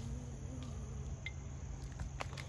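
Faint outdoor background: a steady high insect drone over a low rumble, with one short high chirp about a second in.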